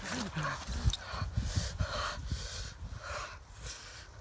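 A boy panting and gasping hard after a struggle, with a short falling cry right at the start; the breaths come about two a second and grow quieter.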